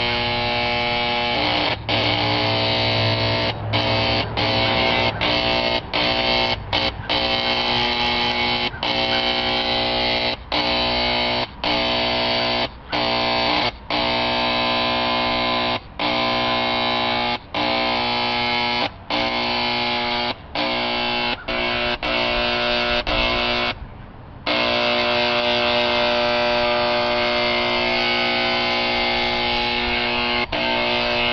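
Burgess electric paint sprayer running with a steady, harsh buzz. It cuts out briefly every second or two as the trigger is released, with one longer pause near the end.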